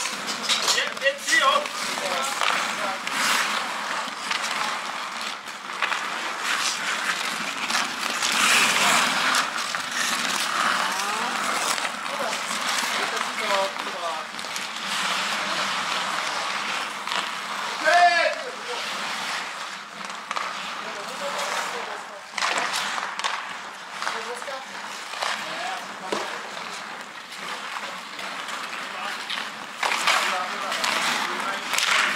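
Ice hockey play on an outdoor rink: skate blades scraping and carving the ice, with sticks clacking against the puck and ice. Players call out now and then, with a loud shout about eighteen seconds in.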